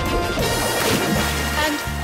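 A crash sound effect for a water-skier's wipeout into the water: a noisy burst about half a second in that dies away within a second, with light background music underneath.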